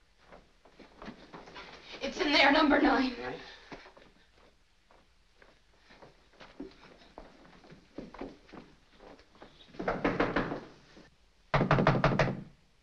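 A voice cries out about two seconds in, then faint footsteps. Near the end comes a fist pounding on a wooden door in two rounds.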